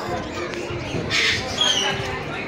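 A parrot gives a loud, harsh squawk about a second in, followed by a short falling whistled call, over the chatter of a crowded hall.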